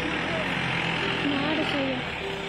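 Several people's voices talking over one another on a steady rushing background noise, with one raised voice rising and falling in pitch in the second half.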